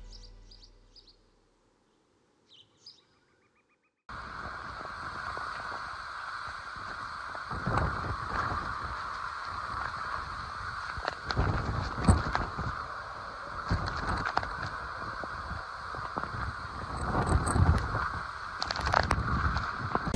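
Intro music fades out, then after a brief silence hurricane-force wind and driving rain start about four seconds in, a dense steady rush that swells and eases in gusts, with scattered sharp knocks.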